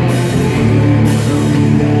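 Live rock band playing loud: electric guitars and bass holding sustained notes over a drum kit, with a cymbal crashing about once a second.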